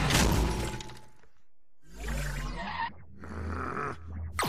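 Cartoon crash sound effects of robots being smashed to pieces as the opening theme ends: a loud shattering crash that dies away within about a second, a brief gap, then more crashing with a low rumble.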